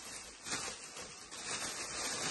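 Faint, soft rustling of the plastic wrap around a stainless-steel pot as it is lifted and handled.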